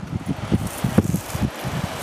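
Wind buffeting the microphone in uneven low rumbles, over a steady rushing hiss.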